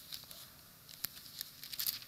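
Thin Bible pages being turned by hand: a run of soft paper rustles and flicks, with a sharper flick about a second in and a quick cluster near the end.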